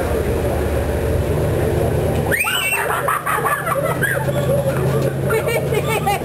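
Low, steady engine rumble of street traffic, with people's voices exclaiming and talking from about two and a half seconds in.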